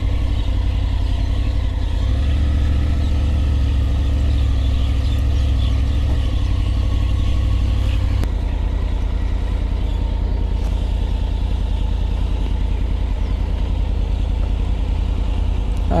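Triumph Tiger 850 Sport's three-cylinder engine running at low speed with a steady low rumble. The rumble eases a little about eight seconds in.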